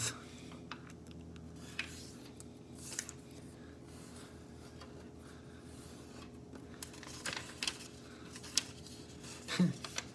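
Sheet of origami paper being folded diagonally and creased by hand: scattered short crinkles and rubs of the paper over a steady low hum.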